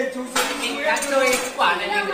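Dishes and chopsticks clinking a few times, the sharpest clink about a third of a second in, among people's voices.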